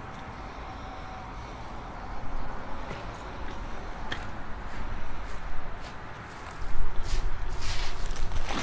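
Faint rustling and small clicks of hands working a plastic mesh net cup and a plastic bag, over a steady low rumble. The handling gets louder near the end.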